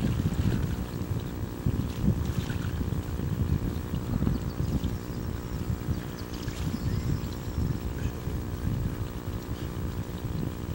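Wind buffeting the microphone: an uneven low rumble that swells and falls in gusts.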